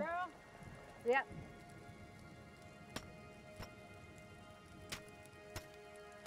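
Mostly quiet: light rain pattering, with a few faint taps scattered through it and soft sustained music underneath.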